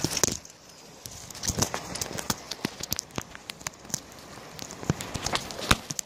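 Handling noise from a phone being held with a finger over the lens and microphone: irregular sharp clicks and crackles of skin and fingers shifting against the phone, a few coming in quick clusters.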